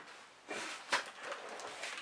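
A short rustle, then a single sharp click just before a second in: a light switch being flipped off.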